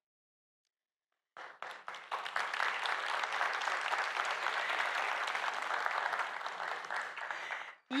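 Audience applauding: after a second or so of silence the clapping starts, swells, holds, then dies away just before the end.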